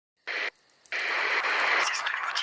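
Radio static: a short burst of hiss, a moment of silence, then steady hiss from about a second in.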